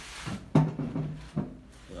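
A brief rubbing noise, then two sharp knocks on wood about a second apart, each followed by a short low ring.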